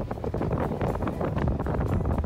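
Wind buffeting an outdoor microphone: a steady rumbling roar with irregular crackles.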